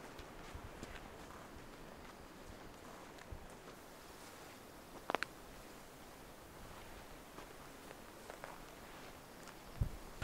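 Faint footsteps of someone walking a dirt trail and through grass, with a sharp double click about halfway through.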